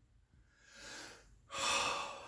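A man breathing: a soft breath a little past the middle, then a louder, sharp breath near the end.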